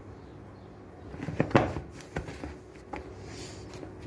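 Hands kneading bread dough in a bowl: soft pressing and squishing, with a few sharp knocks, the loudest about one and a half seconds in, as the bowl shifts and is struck on the counter.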